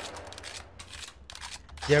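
A quick, irregular run of sharp clicks and ticks: sound effects of a handheld transformation device being handled and readied.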